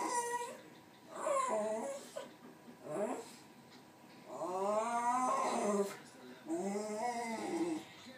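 West Highland white terrier whining in a string of short pitched cries, then two long whines that rise and fall in pitch in the second half.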